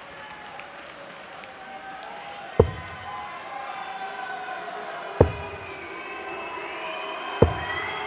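Three darts striking a dartboard, each a single sharp thud, about two to two and a half seconds apart, over steady crowd noise.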